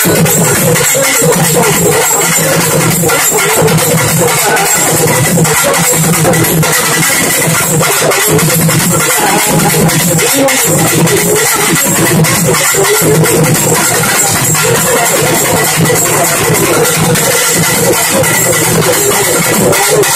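An urumi melam drum ensemble playing loud, continuous fast drumming: urumi hourglass drums with their wavering, moaning friction tone over double-headed and frame drums.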